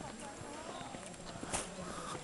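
Indistinct voices of people nearby, mixed with footsteps on paved ground, and a sharp click about one and a half seconds in.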